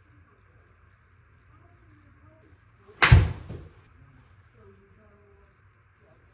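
A golf club striking a ball: one sharp, loud crack about halfway through that dies away quickly.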